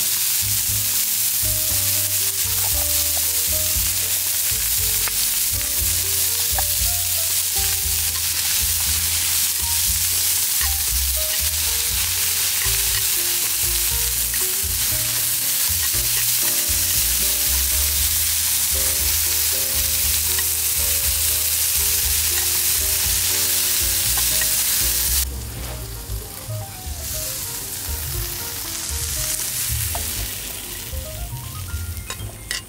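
Chicken, bell peppers and mushrooms sizzling in a frying pan while metal tongs stir them, a steady loud hiss that cuts off suddenly near the end. Soft background music with short melodic notes plays underneath.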